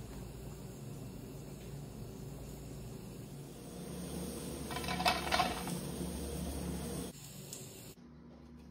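A metal spoon clinking and scraping against a dish in a short cluster about five seconds in, over a faint low steady hum.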